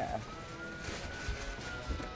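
A thin, whistle-like tone gliding slowly up in pitch and then back down, over a low rumble, with a soft thump near the end.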